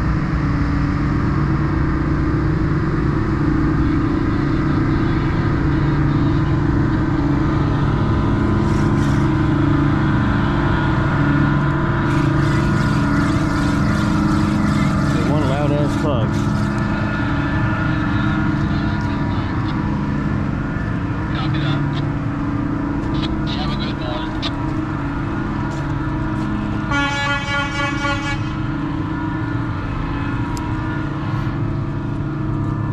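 Diesel engines of a tugboat passing close by: a steady low drone over a deep rumble. Near the end, a short horn-like tone sounds for about a second and a half.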